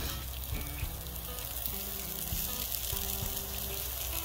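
Chopped cauliflower sizzling in a hot oiled pan, a steady frying hiss.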